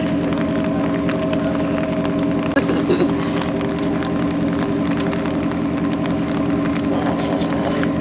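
An engine running at a steady idle: a low, even hum.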